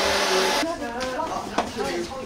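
Steady rushing air noise under voices, cutting off abruptly about half a second in, after which only quieter talk remains, with one short click.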